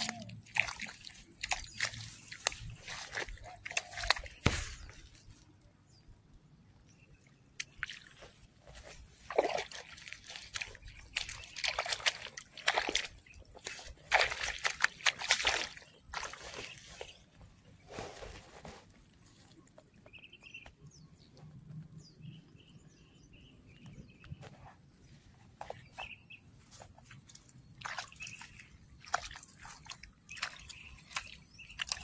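Rice plants rustling and brushing in irregular bursts, with several quieter stretches between them, over a faint steady high hiss.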